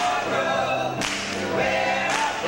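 Gospel choir singing in harmony, with sharp claps landing about once a second.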